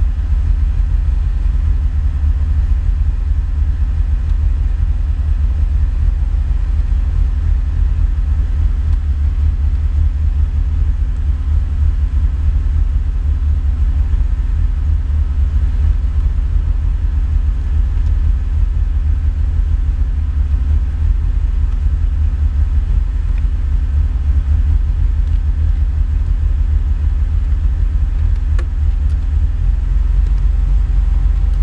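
Nissan Pulsar N12 turbo's E15ET turbocharged four-cylinder idling steadily at about 1300 rpm, heard from inside the car, running on a roughly 50/50 blend of E85 and 98 pump fuel while its injector trims are being tuned.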